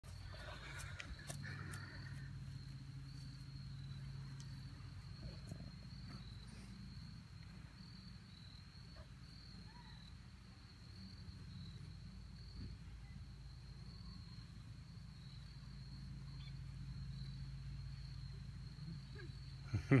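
Quiet outdoor ambience: a steady high-pitched drone of insects over a low steady hum, with a short laugh right at the end.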